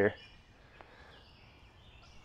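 Quiet woodland ambience with faint, high bird chirps.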